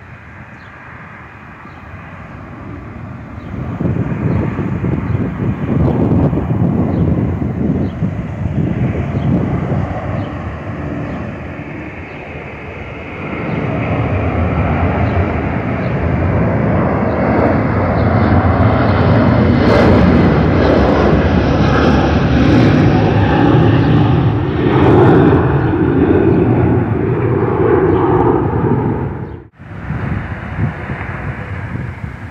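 Airliner flying low overhead: its engine noise swells in over the first few seconds, eases slightly, then grows louder again about halfway through and stays loud until it cuts off suddenly near the end.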